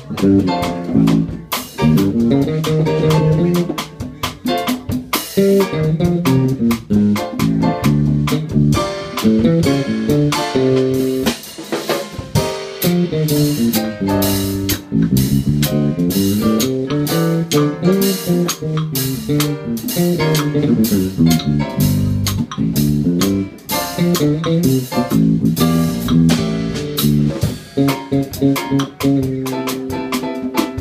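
Live jazz quartet playing: electric bass, keyboard and drum kit in a continuous up-tempo tune.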